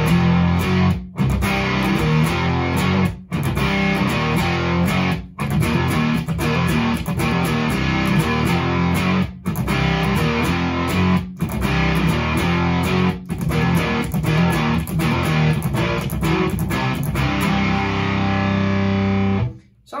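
ESP LTD electric guitar played through an Onkel Amplification Death's Head fuzz pedal (Russian germanium transistors and a 12AU7 preamp tube), with the fuzz and gain turned down for a lower-gain fuzz tone. It plays a riff with brief stops about every two seconds, then ends on a chord held for about a second and a half before it is cut off.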